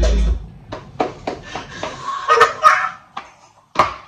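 A hip hop track stops abruptly just after the start, then two men laugh hard in short, sharp bursts.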